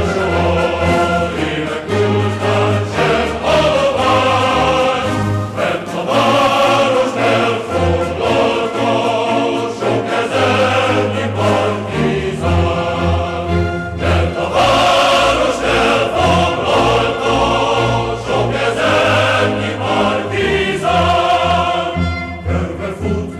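Choral music: a choir singing sustained notes over instrumental backing with a moving bass line.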